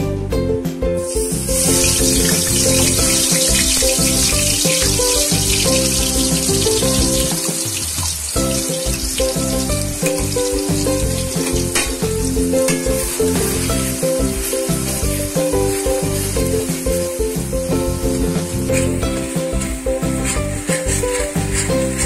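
Masala paste frying in hot oil in a kadai, a steady sizzle that starts about a second and a half in, with some scraping of a metal spatula as it is stirred. Background music with a steady beat plays throughout.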